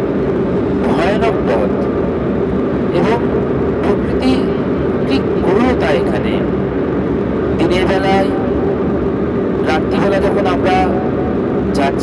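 Engine and road noise inside a moving vehicle's cabin, a steady low drone, with voices talking now and then over it.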